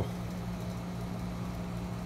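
Steady low mechanical hum with no clicks or other events.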